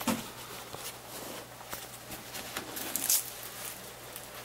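Handling noise as a plastic computer monitor is moved and turned over by hand: soft rustling with a few faint knocks, the clearest about three seconds in.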